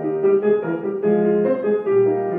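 Solo grand piano playing a melody of several notes a second over sustained bass notes.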